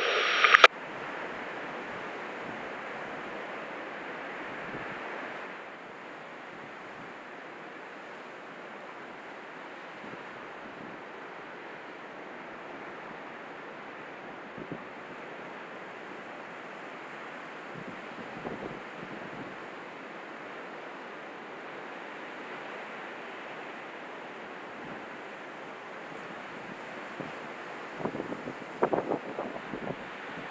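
Strong wind and breaking surf: a steady rushing noise with wind buffeting the microphone, slightly louder for the first few seconds and with a few brief louder bumps near the end.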